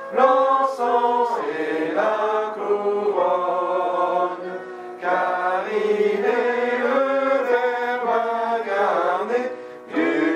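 Voices singing a hymn in long held phrases, with brief breaths between phrases about five seconds in and again near the end.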